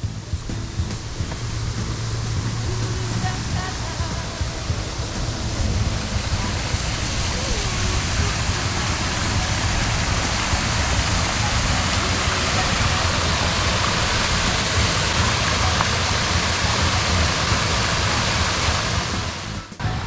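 Small garden waterfall: a steady rush of falling, splashing water that grows louder over the first couple of seconds, then stops abruptly near the end.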